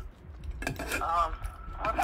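Brief speech from a voice on a phone call heard through the phone's speaker, with a short light click about half a second in.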